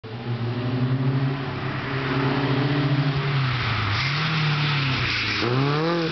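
Škoda 120 GLS's rear-mounted four-cylinder engine, fed by a Weber 40 DCOE carburettor, held at high revs through a drift, its pitch dipping and climbing as the throttle is worked. Tyre squeal joins from about four seconds in.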